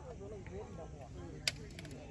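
Indistinct talk of people nearby over a low outdoor rumble, with one sharp click and a few quick ticks about a second and a half in.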